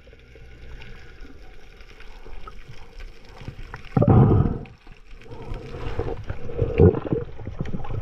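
Underwater sound of water moving around the camera: a steady low rush, broken by short, louder low surges about four seconds in and again near the end.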